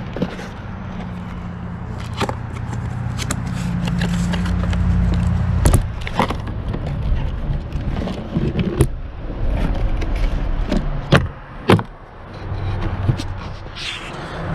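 Handling noise: a cardboard product box and a small power inverter with its cables are picked up and set down on a weathered wooden surface. There are scrapes and about eight sharp knocks and clicks, over a low rumble.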